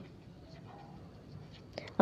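Faint scratching of a felt-tip marker writing a word on paper.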